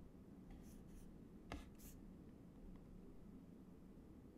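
Near silence: low room tone with a few faint, short scratchy hisses and one soft click in the first two seconds.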